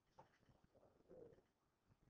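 Near silence: room tone, with a couple of faint, brief sounds, the clearest about a second in.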